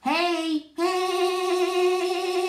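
A high-pitched voice gives a short gliding vocal sound, then from just under a second in holds one long, steady sung note.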